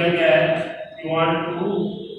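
A man's voice drawn out in long, held, chant-like tones, in two stretches with a short break about a second in; the second fades out at the end.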